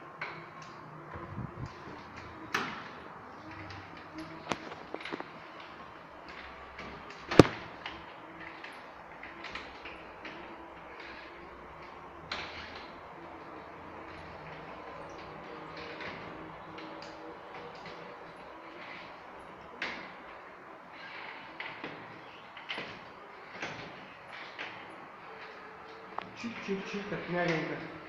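Caterwil GTS3 tracked stair-climbing wheelchair descending stairs and manoeuvring on the landing: a faint steady electric drive hum with irregular knocks and clicks, the sharpest one about seven seconds in.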